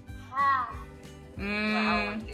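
A person's voice coming through a phone speaker on a video call: a short falling call about half a second in, then a drawn-out held vowel near the end, over soft background music.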